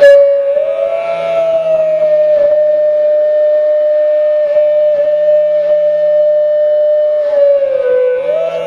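Indian flute meditation music: a flute holds one long, steady note that bends up slightly about a second in and dips near the end, over a low drone, with a few soft plucked-string notes.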